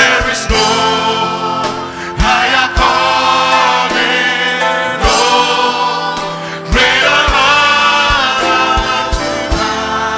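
Gospel choir and congregation singing a slow worship chorus in long held notes, backed by a live band with keyboard, guitar and drum beats.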